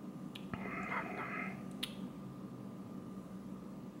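Faint mouth sounds of someone tasting beer: a few small lip clicks and a soft, brief wet sound about half a second to a second and a half in.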